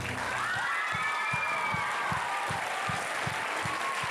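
Audience applauding the end of a dance routine, with a long call that rises and falls over the clapping in the first couple of seconds.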